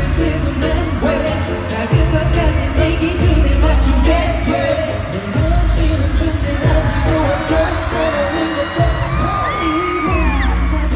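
Live K-pop concert performance heard from within the arena crowd: a male vocalist singing into a handheld mic over a pop backing track with heavy bass beats that drop out and come back, with gliding vocal runs near the end.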